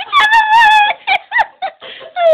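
A dog whining: one long high-pitched whine, then several short yelps.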